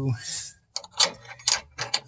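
Several short, sharp clicks, irregularly spaced, after a spoken word trails off.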